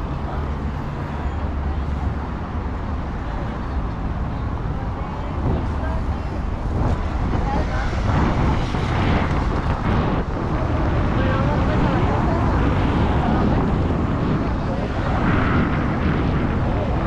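City street traffic running steadily, with people's voices over it; the mix grows louder about six seconds in.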